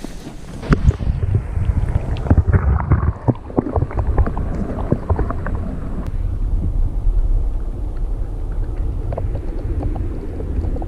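Underwater sound picked up by a camera dunked into a tidepool. About a second in, the high end falls away as it goes under, leaving a muffled low rumble of moving water. Many small clicks and crackles run over the next few seconds, then the rumble settles and steadies.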